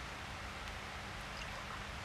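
A faint trickle of liquid poured from a bottle into a small glass, over a steady background hiss.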